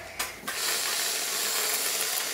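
Reddi-wip aerosol can spraying whipped cream, a steady sputtering hiss from the nozzle starting about half a second in, after a short click as the nozzle is pressed.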